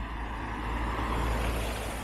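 A compact SUV driving past, its tyre and engine noise swelling to a peak just past a second in and then fading.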